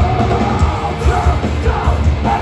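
Hardcore punk band playing live at full volume: distorted guitars, bass and pounding drums under shouted vocals.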